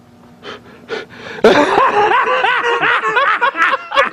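Men laughing loudly and heartily. The laughter breaks out about a second and a half in after a quiet start and goes on in quick rising-and-falling peals.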